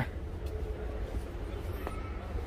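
Low, steady outdoor background rumble with a faint steady hum, and a light click near the end.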